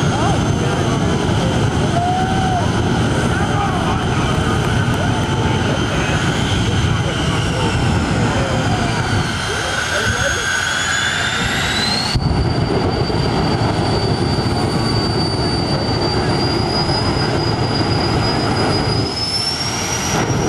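Jet dragster turbine engines running loud at the starting line: a high whine over a heavy rush. The whine slides in pitch, then about twelve seconds in it switches abruptly to a steadier high tone that creeps upward.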